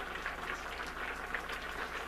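Pan of red beans and rice with broccoli boiling hard, a steady crackling bubble, as excess water is boiled down, over a low steady hum.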